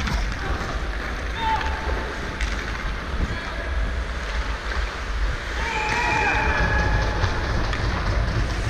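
Live rink sound of an ice hockey game picked up by a GoPro: a steady low rumble of wind on the microphone and arena noise, with skates on the ice. Players call out briefly about a second and a half in and again around six seconds in.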